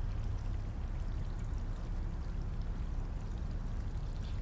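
Steady low background noise, an even rumbling hush with no distinct events.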